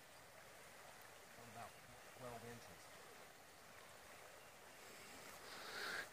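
Near silence: faint outdoor ambience, with two brief, faint voice sounds in the first half.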